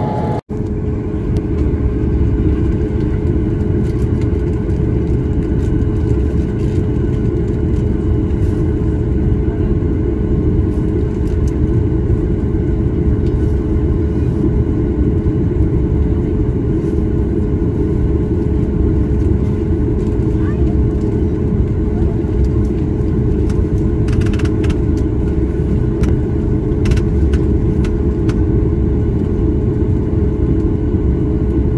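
Steady cabin noise inside a Boeing 737-8 holding for takeoff: its CFM LEAP-1B engines idling with the cabin air system, a dense rumble carrying a steady mid-pitched tone. The sound drops out briefly about half a second in.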